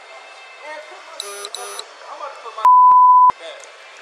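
A single steady electronic censor bleep, about two-thirds of a second long, near the end, replacing a spoken word with all other sound cut out: profanity being masked. Two short high beeps come about a second earlier.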